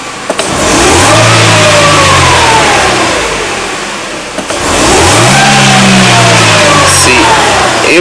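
Car engine revved twice from idle, each rev climbing in pitch, holding briefly, then falling back to idle; the second rev goes higher than the first.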